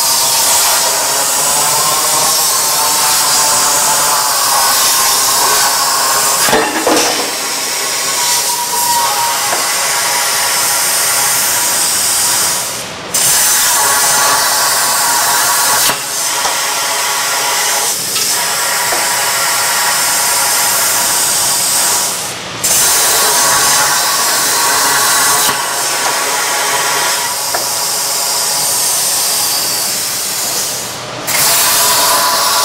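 Plasma torch cutting through steel tube: a loud, steady hiss that breaks off briefly a few times as the cut goes on.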